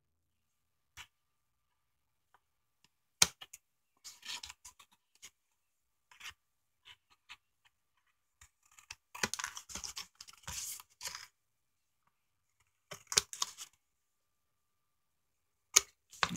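Scissors snipping the corners off a thin paperboard box: short, separate crisp cuts and crackles of card, with a sharp click about three seconds in, a busier run of snips in the second half and another sharp click at the very end.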